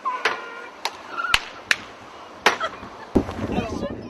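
A handful of sharp clicks or knocks, about six, at irregular intervals, with snatches of voices between them.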